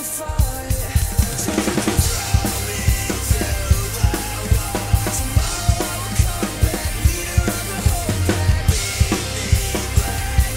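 Acoustic drum kit played in a driving rock beat, with kick drum, snare and cymbals striking in a steady rhythm over a recorded backing track of the song.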